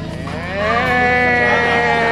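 A person's voice holding one long note that slides up into it and stays level, over a steady low hum.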